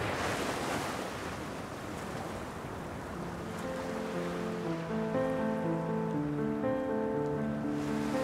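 Ocean surf washing up onto a beach, a steady wash of water that is strongest in the first second. From about three seconds in, soft background music of long held notes comes in over it.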